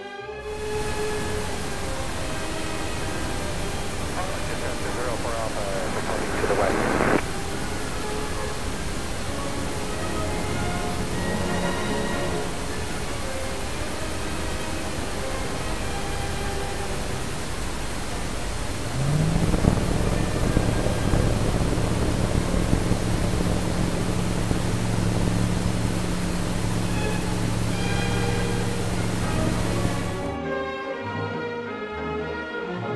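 Zenith STOL CH 701 light aircraft engine and propeller heard from inside the cockpit, with steady cabin and wind noise and a brief rising whine a few seconds in. About nineteen seconds in, the engine rises in pitch to full takeoff power and holds there through the takeoff roll and liftoff.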